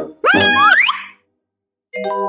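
Cartoon boing sound effect lasting under a second, its pitch rising. It comes right after a last plucked-string note and is followed by a short silence, then a chime note begins at the very end.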